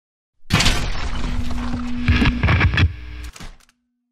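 Short animated-logo intro sting: music layered with impact and crash sound effects. There is a cluster of sharp hits two to three seconds in, and it cuts off just before the four-second mark.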